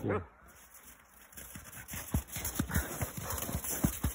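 Footsteps crunching through packed snow: an irregular run of thuds that starts about a second and a half in and grows busier toward the end.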